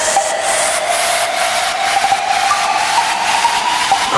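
Techno breakdown: a white-noise riser hissing under a single synth tone that slowly climbs in pitch. There is no kick drum or bass, only faint regular ticks.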